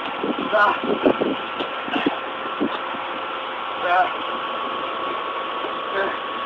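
Short grunts and cries from wrestlers brawling, with a few dull knocks of bodies in the first few seconds, over a steady engine-like hum.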